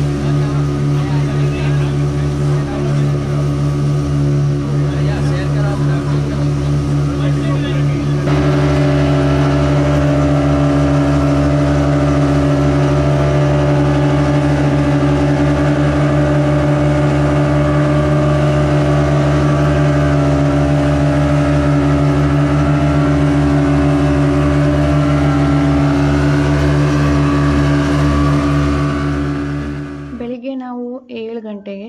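Twin Yamaha outboard motors on a speedboat running steadily at cruising speed, a loud even drone with the rush of the wake. About eight seconds in the sound shifts abruptly and grows a little louder, then holds steady.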